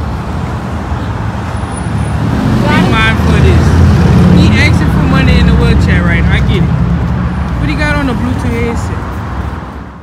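City street traffic rumbling, building to its loudest a few seconds in and easing off, with people's voices talking over it. The sound cuts off suddenly at the end.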